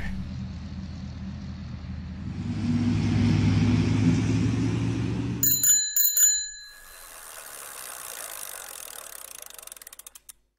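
A tractor engine runs with a steady low drone that swells a few seconds in, then cuts off. A bicycle bell then rings twice in quick succession, followed by a soft even hiss that fades away near the end.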